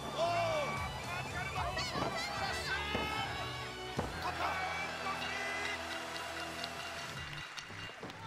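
Background music over the match's own sound: a thud as a top-rope splash lands on the ring mat, then shouting voices and two sharp slaps about a second apart as the referee's hand hits the mat counting the pin.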